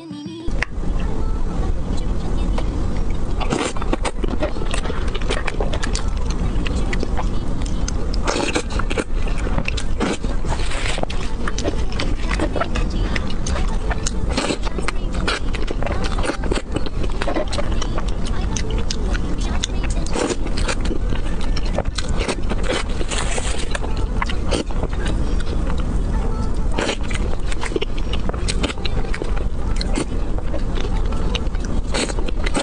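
Close-miked eating of a soft cream cake: wet mouth sounds, chewing and spoon scrapes, heard as many short clicks over a steady, loud background noise.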